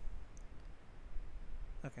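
A few faint clicks over a low rumble, then a man says "Okay" near the end.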